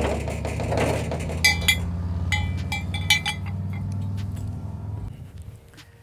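Harley-Davidson V-twin motorcycle riding off, its engine note holding steady and then fading away over about five seconds. A few light metallic clinks sound partway through.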